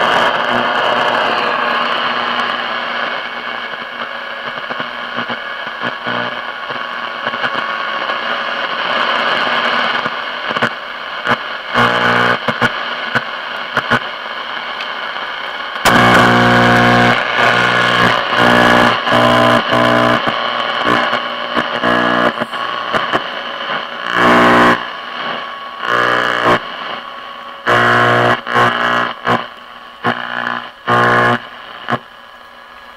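Zenith Trans-Oceanic tube radio hissing with static and steady tones as the tuning knob is turned. From about ten seconds in, snatches of stations cut in and out as the dial sweeps past them.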